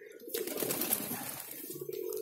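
Domestic pigeons cooing: a low, wavering coo starting about a third of a second in, with a faint rustle of feathers from a pigeon being handled.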